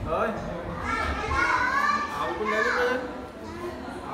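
Children's voices, high-pitched talking and calling out.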